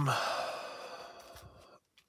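A man's long breathy sigh, exhaled and fading away over about a second and a half.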